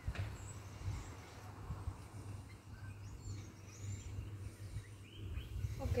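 Birds chirping faintly, a few short calls, over a steady low hum.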